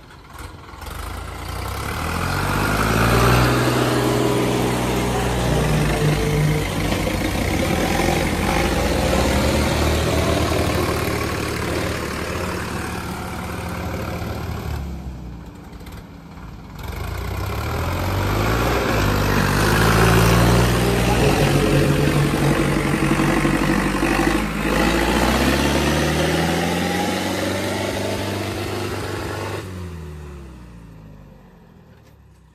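Diesel tractor engines, a Sonalika DI 50 three-cylinder and the rival tractor chained to it, running at full throttle under heavy load in a tug of war. The engine note climbs over the first few seconds and holds high, drops briefly about halfway through, then climbs again for a second pull and falls away at the end.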